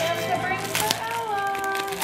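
Voices over background music, with held, pitched tones like singing and a couple of short sharp clicks a little under a second in.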